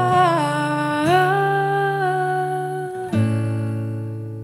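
Closing bars of a slow song: a wordless vocal line holds long notes over acoustic guitar, then a final guitar chord is struck about three seconds in and rings out, fading.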